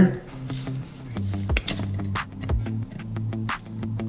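Quiet background music with steady low tones, over light metallic clicks and taps from a hex nut being spun off by hand and the butterfly valve's lever being worked off its stem.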